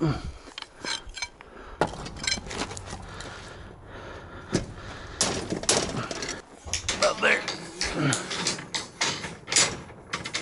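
Steel rebar being handled, with repeated sharp metallic clinks and knocks as the bars strike one another.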